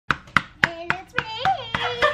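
Rapid, evenly spaced hand claps, about four a second, with excited voices, a child's among them, cheering over them from under a second in.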